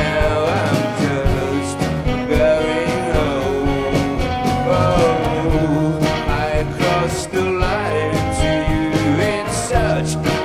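A live rock band plays a steady song on acoustic guitar, electric bass, drum kit and keyboard.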